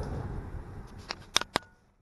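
Wind noise on the microphone outdoors, thinning away, with three sharp clicks in the second half before the sound fades out.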